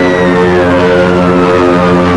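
The whistle of a falling bomb, a single tone gliding steadily down in pitch, over a steady low drone.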